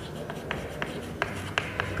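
Chalk writing on a blackboard: several short, sharp taps and strokes as letters are written.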